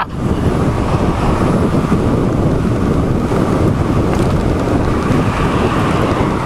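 Steady wind noise buffeting the microphone of an electric bike travelling at about 37 mph, a loud even rush heaviest in the low end.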